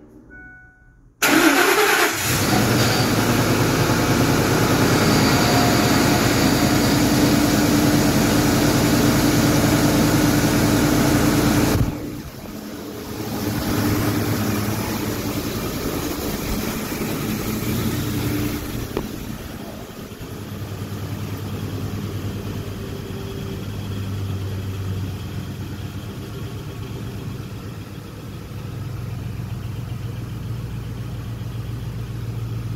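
Ford 5.4L three-valve Triton V8 starting for the first time after its timing was rebuilt. It catches suddenly about a second in and runs loud and steady. About twelve seconds in it gets quieter, and it keeps running at a lower, slightly uneven level to the end.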